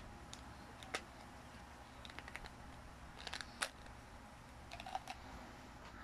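Faint, scattered clicks and taps of small hard plastic parts as a red plastic candy toy is handled and worked open, the sharpest click about three and a half seconds in.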